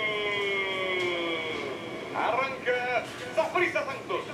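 A football commentator's long, drawn-out shout, played through a television, trails off with its pitch slowly falling and fades out about a second and a half in. A few quick spoken syllables follow near the end.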